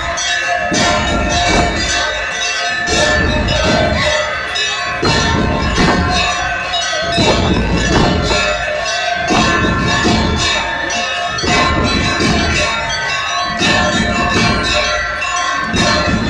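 Hand bells ringing rapidly and without a break during an aarti, with music and a low beat underneath.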